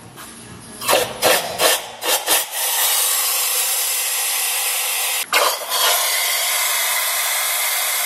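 Cloth rag rubbed in short, quick strokes over an engine bay, then a steady loud hiss that starts about two and a half seconds in and dips briefly a little past the middle.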